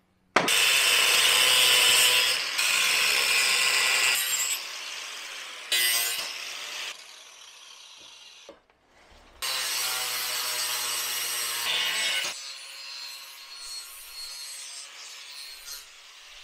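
Steel plate being ground round by hand against a power disc sander, a harsh grinding noise of abrasive on steel. It comes in several separate stretches with abrupt starts and stops, loudest in the first few seconds, with a short silent break about two thirds of the way through.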